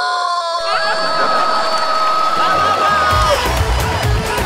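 Conch shell (shankh) blown in one long steady note that wavers slightly at the start and breaks off after about three seconds. Audience cheering and laughter rise under it, and a low music beat comes in near the end.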